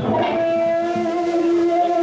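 Electric guitar holding one long sustained note that starts about a third of a second in.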